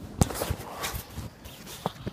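Handling noise from a phone held in the hand: a few sharp knocks and rubbing as fingers and a sleeve move over it, the loudest knock just after the start.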